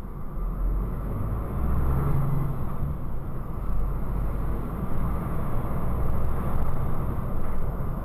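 Articulated truck's engine and road noise heard inside the cab: a steady low rumble that swells slightly now and then as it drives on.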